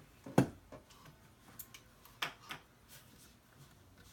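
A few light, scattered clicks and taps from hands handling the needle and presser-foot area of an industrial sewing machine while drawing up the bobbin thread, the sharpest click about half a second in.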